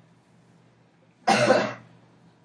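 A person coughs once, a short, loud cough a little past a second in, with a quiet room before and after.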